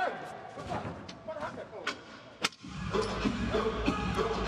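Faint voices with a few sharp knocks, the loudest about two and a half seconds in; just after it, music comes in abruptly.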